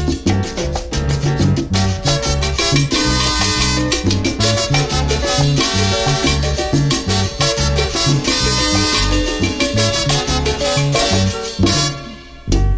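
Salsa andina song playing: an instrumental passage with no singing, a steady percussion beat, bass and sustained instrument lines.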